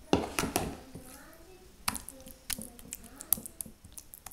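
A spoon knocking and scraping against a glass baking dish while spreading and pressing soft cottage-cheese mixture into it: a cluster of knocks at the start, then single sharp clicks about every second.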